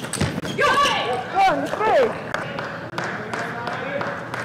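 A few table tennis ball hits, then loud excited shouting by players from about half a second to two seconds in, rising and falling in pitch, as the point is won, in a large hall.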